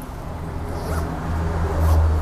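A backpack zipper being pulled open in short strokes, one about a second in and another near the end, over a low steady rumble that swells near the end.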